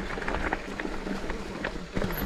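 Mountain bike rolling downhill over a dirt forest trail: steady tyre rumble on earth and leaves, with frequent short rattles and clicks from the bike jolting over stones and roots.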